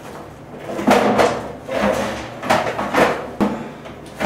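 Black plastic cover of a wall-mounted paper towel dispenser knocking and rattling against its housing as it is pushed and worked into place, in a few short bouts.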